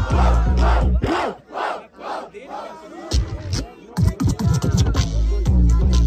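Hip-hop beat with heavy bass played by the DJ over a shouting crowd. About a second in, the beat drops out and the crowd's shouts carry on alone for a couple of seconds. The beat then stutters back in and runs steadily again from past the halfway point.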